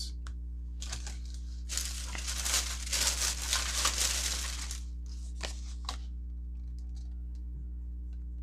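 Plastic packaging crinkling and rustling as it is handled for about three seconds, with a few sharp clicks before and after.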